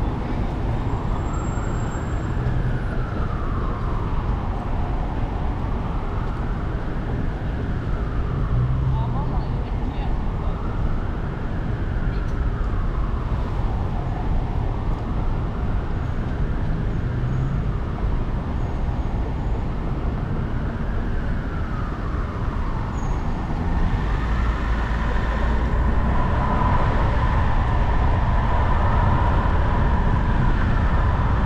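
A siren wailing, its pitch slowly rising and falling about every four and a half seconds, over a steady low rumble of city traffic. In the last few seconds a steady higher tone joins in and the rumble grows louder.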